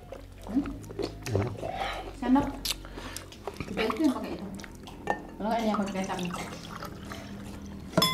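Voices talking casually over a meal, with light scattered clicks of dishes and cutlery.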